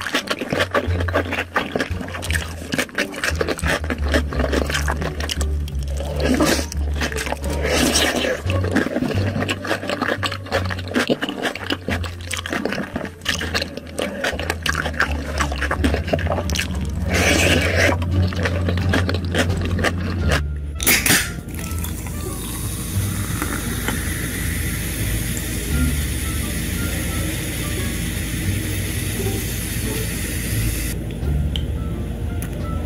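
Close-up chewing and slurping of spicy instant noodles, a dense run of small wet clicks and smacks. About two-thirds of the way through this gives way to a steady fizzing hiss of cola being poured into a glass.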